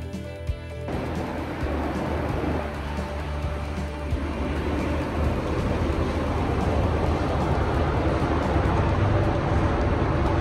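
Background music cuts off about a second in, giving way to shipboard deck noise: a steady low rumble of ship engines under a rushing hiss of water and air, slowly growing louder as two ships' hulls close alongside.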